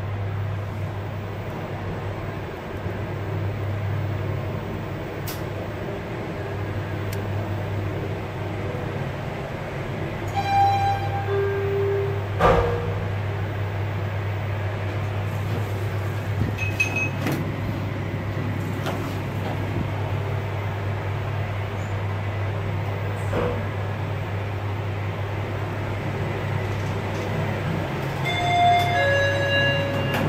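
Guangri machine-room-less elevator with a steady low hum. An electronic chime sounds about ten seconds in, then a sharp clunk follows, in step with the car doors opening. Another short series of electronic beeps comes near the end.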